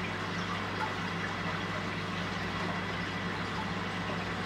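Aquarium pump and filter equipment running: a steady low hum with water fizzing and trickling over it.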